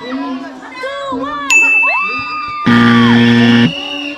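Spectators shouting and cheering at a basketball game. A steady high tone comes in suddenly about a third of the way through, and a loud buzzer sounds for about a second near the end, marking the end of the game.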